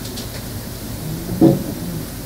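Steady hiss of room noise picked up by a microphone, with one brief, low vocal sound from a man about one and a half seconds in.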